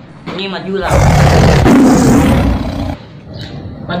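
A loud roar like a big cat's, lasting about two seconds and cutting off abruptly, heard after a short spoken word.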